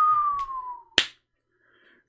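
A single whistle-like tone gliding slowly downward for about a second, then one sharp click or snap.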